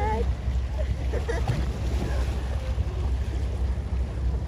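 Steady low rumble of a boat under way at sea, with wind on the microphone and water washing alongside. Faint voices come and go in the background.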